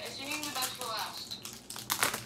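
Foil wrapper of a Pokémon Shining Fates booster pack crinkling as it is handled and torn open, with a sharp rip near the end.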